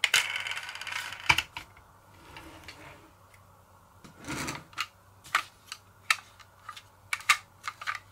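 Toy die-cast pickup trucks handled and set down on a tabletop: a dense clicking rattle for about the first second, a short rolling scrape about four seconds in, and scattered sharp clicks throughout.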